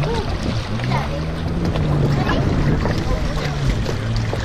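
Yamaha jet ski engines idling nearby, a steady low hum that steps up slightly in pitch about a second in and drops back near the end. Water sloshes close to the microphone at the surface.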